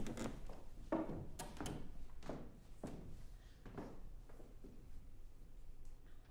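Footsteps and light thuds of people moving about a stage: irregular, several in the first few seconds, then thinning out toward the end.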